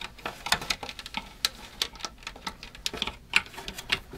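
Irregular light clicks and taps of hard plastic as the clear plastic lid of a plastic shower drain sump box is handled and set on the box.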